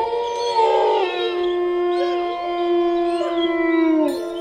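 Channel intro stinger: one long, steady, howl-like pitched tone held for about three seconds, with fainter sliding tones above it.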